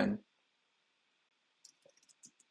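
Faint clicks of computer keyboard typing, a few keystrokes starting near the end, as an email address is typed into a web form.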